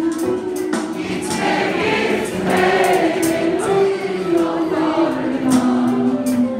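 Live band music: a melody of long held notes stepping up and down over a steady cymbal beat, with voices singing along.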